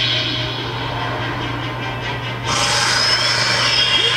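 Anime fight sound effects playing back: a steady, noisy energy rush that gets louder and brighter about two and a half seconds in.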